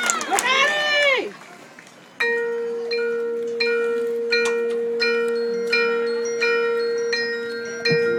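Crowd cheering and whooping dies away, and after a brief hush a marching band's front-ensemble mallet percussion begins the show: single bell-like notes struck about every 0.7 s, ringing over a steady held low note.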